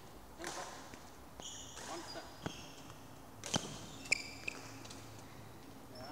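Rubber-soled court shoes squeaking briefly on a sports-hall floor, with a few sharp taps, against faint voices in a reverberant hall.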